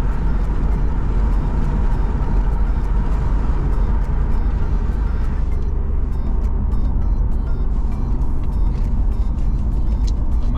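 Car driving on a highway: steady road and engine noise, with the higher hiss dropping away about halfway through.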